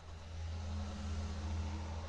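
A steady low hum, with a faint higher tone joining about half a second in.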